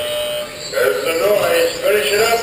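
A steady electronic beep lasting about half a second, followed by a voice talking.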